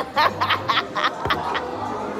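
Women laughing together: a run of about six short laughs in quick succession over the first second and a half, then easing off.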